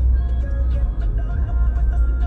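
Steady low rumble of a car heard from inside the cabin, with music playing faintly.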